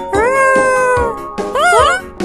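A high, cartoonish character voice giving a long drawn-out "ooh" that falls gently in pitch, then a short call that bends up and down near the end, over bouncy children's background music.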